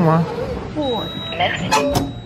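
Voices talking, with a sharp knock near the end as a plastic water bottle drops into a vending machine's delivery tray.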